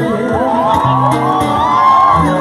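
Live band music with an audience screaming and whooping over it; several high voices glide up and down together from about a third of a second in.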